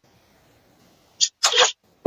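Near silence, then two short hissy breath noises from a person in quick succession, a little past halfway.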